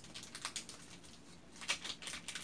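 Faint, irregular clicking and crackling from fingers pinching and rolling black soft clay into small balls, with the loudest cluster of clicks near the end.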